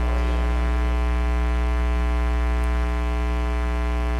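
Steady electrical mains hum, a buzzy drone with many overtones that holds unchanged at the same pitch and level.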